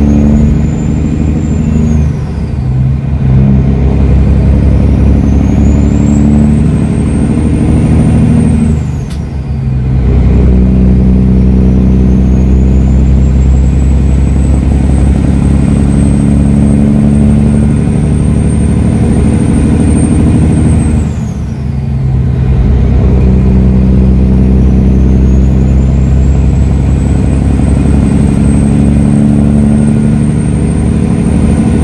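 Semi truck diesel engine pulling hard up through the gears, heard from inside the cab. A high whine climbs as the revs build and drops away at each upshift: shortly after the start, about nine seconds in and about twenty-one seconds in, then climbs again to the end.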